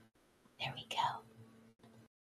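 A woman whispering softly and briefly, lasting under a second, in the middle of a quiet pause.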